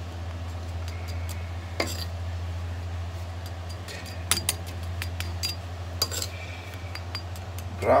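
A metal spoon clinking against an oven's wire rack and the grilled catfish on it while oil is spooned over the fish: a few sharp clinks, the clearest about two, four and six seconds in, over a steady low hum.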